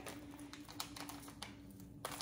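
Faint crinkling and light clicks of plastic being handled: a zip-top bag and a resealable spice packet.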